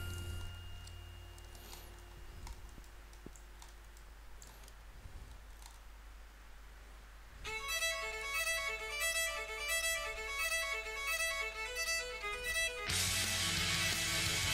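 Background music: quiet for the first half, then a rhythmic melody of repeated notes comes in about halfway, and the music turns fuller and louder near the end.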